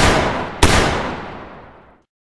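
Two handgun shots, one at the start and one about half a second later, each followed by a long echoing tail that fades away.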